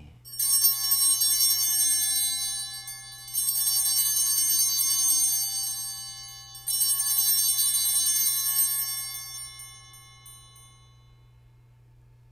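Altar bells shaken in three separate peals about three seconds apart, each a bright jingling ring that fades away, the last dying out near the end: the bells rung at the elevation of the chalice after the consecration.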